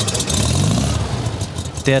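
Porsche 356's air-cooled flat-four engine running loudly out of its twin tailpipes, the revs rising briefly and falling back about half a second in.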